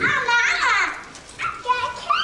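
A young child's high-pitched voice, rising and falling in pitch, for about the first second and again just before the end.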